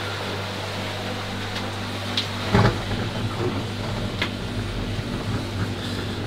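Steady low electric hum of pond pumps running, with evenly spaced overtones over a constant rush of water in the pipework, and a soft knock about two and a half seconds in.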